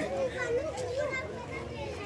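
People talking in the background, with a child's voice among them.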